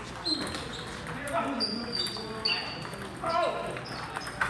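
Table tennis ball clicking off paddles and the table in a rally, a sharp hit every second or so, with voices talking in the echoing hall.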